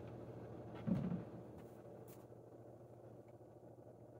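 Quiet room tone with a low steady hum and a brief soft low sound about a second in.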